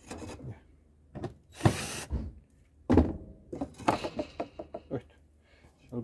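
A thin spacer strip being pressed and knocked into place along the inside of a wooden hive box: a short scraping rub about two seconds in, a solid knock about a second later, then a quick run of light taps and clicks.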